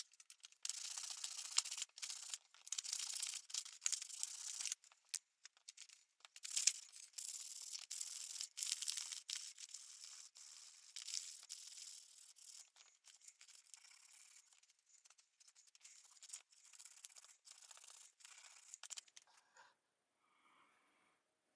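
Sandpaper rubbed by hand over the end edge of a small wooden knife handle in repeated short scraping strokes with brief gaps, rounding over the square edges. The strokes are louder in the first half and lighter after about ten seconds.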